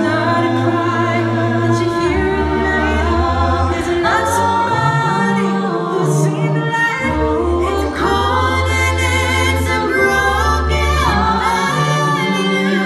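A cappella vocal group singing live in close harmony through microphones and a hall PA, with no instruments. A deep bass voice holds long low notes beneath several higher voices.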